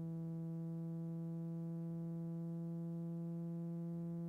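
A single held electronic tone, a low note with a stack of overtones, steady in loudness and drifting very slightly upward in pitch.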